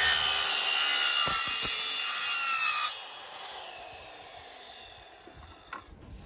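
Sliding mitre saw cutting through a fibreglass press-composite rail profile; about three seconds in the cut ends and the blade spins down with a falling whine that fades away.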